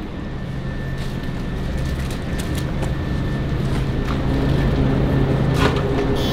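Steady low hum of refrigerated drink coolers, growing slowly louder, with a faint steady high tone over it. A few light clicks, with a sharper click near the end.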